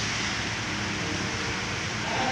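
Electric stand fan running, a steady rush of air from its spinning blades, while its head oscillates side to side with the swing mechanism working again.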